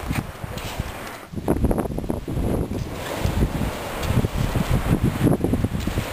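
Wind buffeting the camera's microphone in uneven gusts, a rough low rumble that picks up strongly about a second in.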